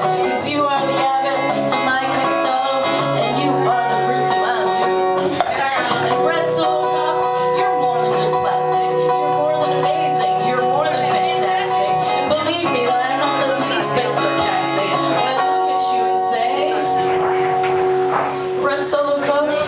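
Acoustic guitar strummed live through a small PA, with people talking over the music.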